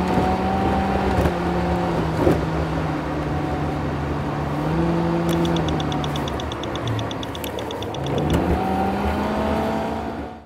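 A Nissan car's engine and road noise heard from inside the cabin while driving, the engine note falling and rising, and climbing again near the end as it accelerates. A rapid, even, high ticking runs for about three seconds in the middle.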